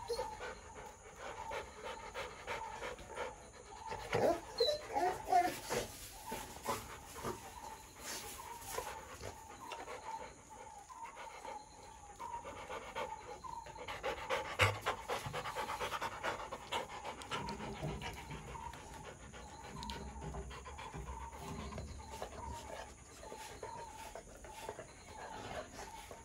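Rottweiler panting with its mouth open, a rhythmic run of quick breaths, louder in stretches about four seconds in and again near the middle.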